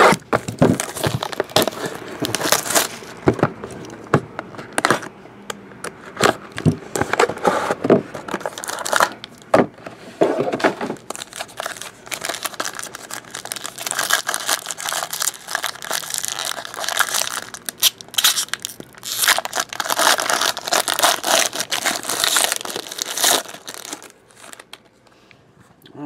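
A cardboard trading-card box is handled and opened, then its silver foil pack is torn open and crinkled, with sharp crackles throughout. The crinkling is densest through the second half and dies down shortly before the end.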